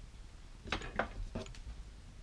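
A few short clicks and clinks of small metal fly-tying tools being handled at the vice, four in quick succession starting under a second in.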